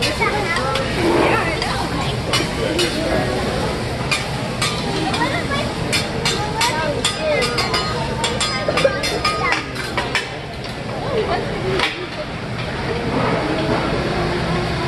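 Hibachi chef's metal spatula chopping and clacking on a steel teppanyaki griddle: a run of quick sharp clicks, thickest through the middle, as he cuts vegetables on the hot plate. Table chatter carries on underneath.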